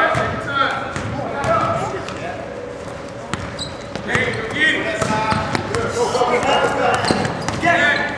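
Basketball game sounds: several voices shouting and calling over one another, with a basketball bouncing on the court in short knocks throughout.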